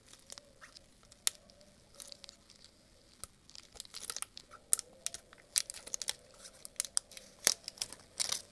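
Crinkling and sharp clicking of a small plastic container and its wrapping handled in gloved fingers. It is sparse at first and becomes a dense run of crackles and clicks from about halfway through.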